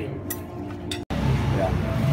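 Metal cutlery clinking against a ceramic plate a couple of times, then an abrupt cut to background voices.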